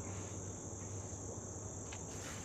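Steady insect chorus outdoors: one constant, high-pitched shrill tone that does not change.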